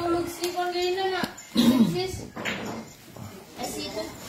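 Voices making drawn-out, sing-song sounds with no clear words: held tones that slide up and down, with a louder falling call about one and a half seconds in.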